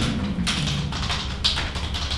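Papers being handled on a desk: rustling sheets with a few sharp taps and clicks, about half a second to a second apart.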